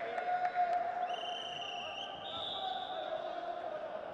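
Wrestling arena sound: a few knocks and squeaks from the wrestlers on the mat, then, from about a second in, a high steady tone that steps up in pitch about halfway and lasts about three seconds.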